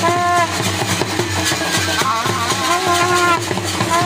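Live folk music: dhol drums beating a fast, steady rhythm, with a high melody that slides and wavers over it.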